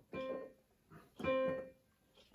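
Casio Privia PX-S1000 digital piano in its grand piano tone, sounding middle C twice, about a second apart, each note fading away.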